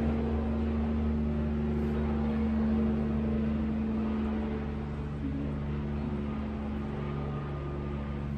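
A steady low drone made of several held tones, some of which drop out and come back every few seconds.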